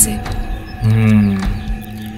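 Film dialogue over a soft background music score, with a held low-pitched voice sound about a second in.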